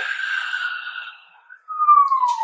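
A person's breathy whistle: a held note that fades out partway through, then a single falling note near the end.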